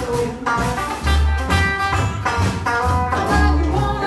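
Live blues band playing: a woman singing over electric guitar, low bass notes and a drum kit with cymbals.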